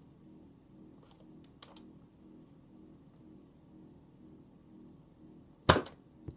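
A spring-powered Nerf blaster firing a dart: one short, sharp pop near the end. A couple of faint plastic clicks come earlier.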